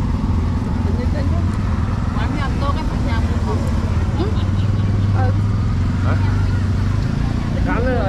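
Steady low hum of vehicle engines in street traffic, under scattered voices of people talking nearby.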